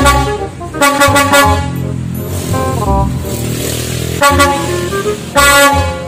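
Truck horn sound effect dubbed onto the model trucks: loud blasts of a multi-tone horn in short bursts, once at the start, again about a second in, and twice near the end. A lower, steadier vehicle-like sound fills the gap in the middle.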